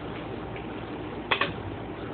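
Two sharp clicks or knocks in quick succession about two-thirds of the way in, over a steady background hiss.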